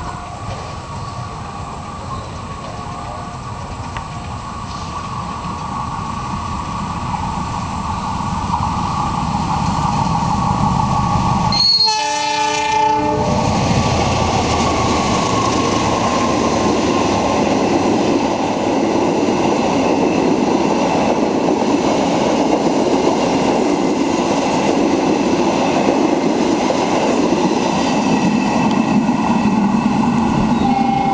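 A diesel-electric locomotive, a GE CC 206, hauls a passenger express through the station without stopping. The sound grows louder over the first ten seconds as the train approaches, the horn sounds briefly about twelve seconds in, and then the locomotive and its carriages run past. A steady sound of wheels rolling on the rails continues as the carriages pass.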